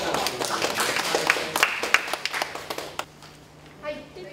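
A small group clapping hands in short, quick, uneven claps; the clapping dies away about three seconds in.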